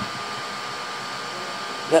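A steady, even whir from a small electric motor running in the room, with a thin steady high hum in it. A voice starts just at the end.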